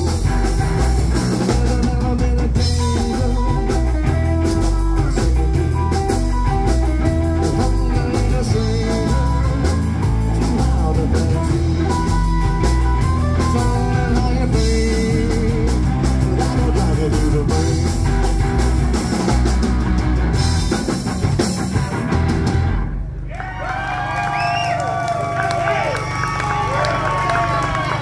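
Live rockabilly band playing an instrumental passage: electric guitars, slapped upright double bass and drum kit driving a steady beat. About three seconds before the end the full band drops out, leaving a held low note under sustained notes that bend in pitch.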